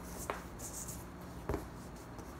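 Handling noises from a small aluminium RC hydraulic valve block and hex keys on a sheet of paper over a wooden floor: a light knock, a brief papery scrape, then a second, louder knock about a second and a half in.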